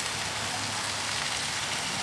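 Shish kabobs of chicken, pineapple and onion sizzling on a hot barbecue grill, a steady hiss.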